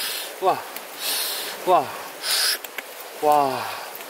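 A man's short wordless vocal sounds, three times, each sliding down in pitch, the last one longer. Between them, leaves rustle as they are plucked by hand from a low plant.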